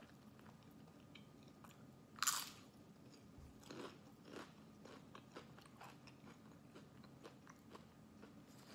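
A tortilla chip dipped in guacamole is bitten with one loud crunch about two seconds in, then chewed with a run of quieter crunches.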